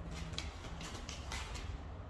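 Several short, soft rustles and scrapes of small items being handled at a table: candy wrappers and small spoons in plastic bowls. A low, steady rumble runs underneath.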